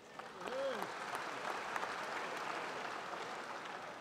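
Audience in a large session hall applauding: the clapping builds within the first half second, holds steady and thins near the end.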